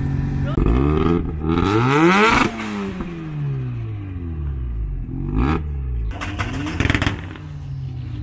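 Turbocharged Mazda RX-7 engine being revved in the open air. One rev climbs for about two seconds and then falls back toward idle, followed by two short blips of the throttle near the middle and near the end.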